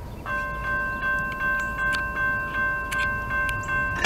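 Railroad grade-crossing bell starting up suddenly and ringing steadily at about two to three strikes a second, activated by the approaching freight train.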